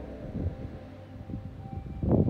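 Wind buffeting the microphone in irregular low gusts as the steady tones of the music fade away.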